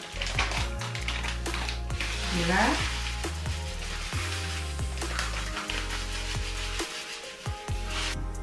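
Light brown sugar poured from a bag into a bowl of flour, a hissing pour that stops about a second before the end, over background music.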